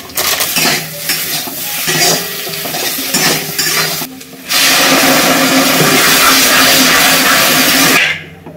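Food frying in hot oil in a black wok on a gas stove: a lighter sizzle with a few clinks at first, then about halfway through the contents of a small steel cup go into the oil and a loud, steady sizzle takes over.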